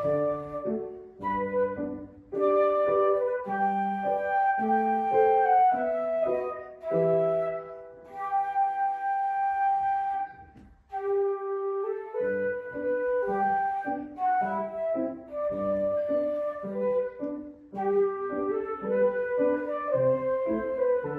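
Flute playing a slow melody of held notes over piano accompaniment. Both stop briefly about halfway through, then start again.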